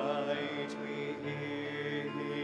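A small mixed vocal group singing a slow hymn in harmony, holding long, sustained notes.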